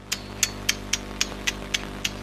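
A quick, even series of sharp taps or clicks, about four a second, over a steady low hum.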